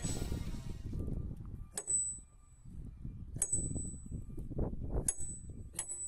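Sledgehammer striking a row of steel wedges driven into a sandstone boulder to split it: a strike at the start and four more, each a sharp metallic hit with a brief high ring.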